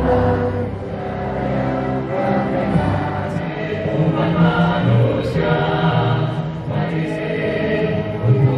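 Choral music: voices singing long held chords that change every second or two.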